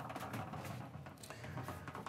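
Faint soft knocks and shuffling of stockinged feet stepping onto a fiberglass shower pan.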